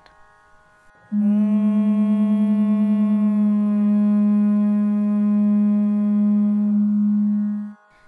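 A woman hums one long note, closed-mouthed, over a steady reference drone. At first her note sits slightly sharp and beats against the drone in a quick wobble. As she eases the pitch down, the wobble slows and fades into a single blended note, in tune with the reference. The hum starts about a second in and stops just before the end.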